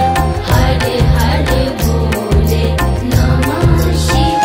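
Hindu devotional Shiva bhajan music in an instrumental passage, with a steady rhythmic beat of bass and percussion under a melody line.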